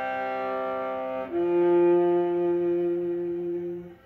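Solo viola, bowed: a sustained note moves about a second in to a lower, louder note that is held for about two and a half seconds and released near the end.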